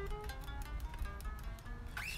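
Fender '60s Road Worn Stratocaster played unamplified: a quick run of single picked notes stepping between pitches. It is played to test the strings after setting the action, and they ring cleanly.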